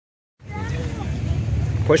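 Steady low rumble of a car engine idling, with people talking faintly behind it.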